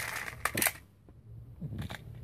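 Plastic clicks and rattling from a Trackmaster Diesel 10 toy engine being worked by hand, with two sharp clicks about half a second in, then quieter handling.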